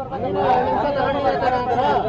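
Speech only: several people talking over one another at once.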